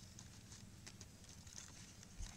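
Near silence with a few faint, light ticks from coconut palm leaf strips being handled as they are woven.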